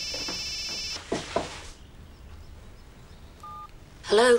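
Electronic telephone ringing: one warbling trill that stops about a second in, followed by quiet room sound with a faint short two-note tone near the end.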